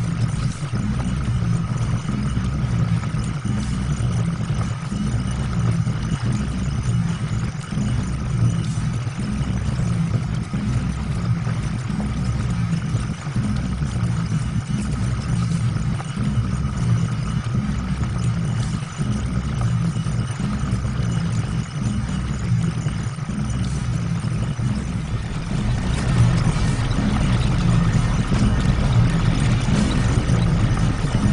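Background soundtrack music blended with a steady low machine-like rumble and hum, growing slightly louder near the end.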